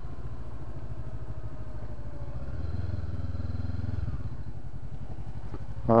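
Honda CB500X parallel-twin engine with an aftermarket Staintune exhaust, running at low revs as the bike rolls slowly. A steady low rumble that swells slightly around the middle, with no wind noise.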